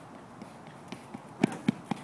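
A pole vaulter's running footsteps on a rubber track during the approach run. The strides come quicker and louder, with three sharp, loud footfalls about a quarter second apart in the second half.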